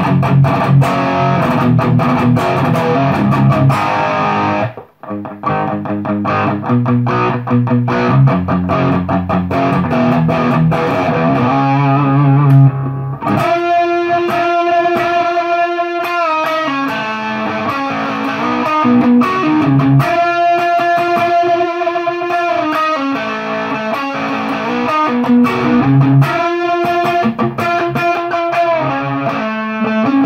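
Distorted electric guitar played through a Diezel VH4 high-gain tube amp: chugging rhythm riffs with a brief stop about five seconds in. From a little before halfway it turns to held single-note lead lines with small bends.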